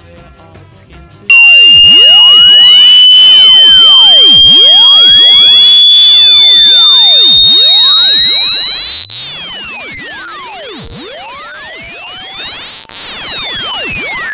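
Quiet music for about a second, then an extremely loud, piercing electronic tone cuts in suddenly and slowly rises in pitch, harsh and distorted with chirping overtones. A fainter low tone sweeps upward underneath in the second half.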